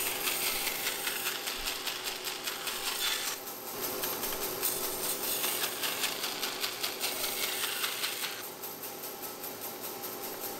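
Bandsaw running with a steady hum while it cuts rigid foam insulation blocks into shims. The cutting hiss comes in two passes: one over the first three seconds or so, and another from about four and a half to eight seconds.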